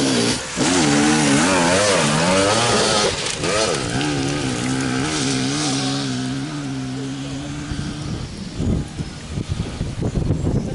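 Enduro motorcycle engine being ridden hard: its note wavers up and down as the throttle is worked for the first few seconds, then holds steadier and slowly fades, dying away about eight seconds in.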